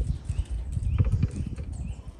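Irregular light knocks and clicks of a bolt and nut being fitted by hand to the metal frame of a fifth-order lighthouse lens.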